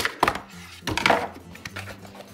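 Scissors cutting packing tape on a cardboard box: two quick sharp snips at the start, then a longer rasping cut about a second in.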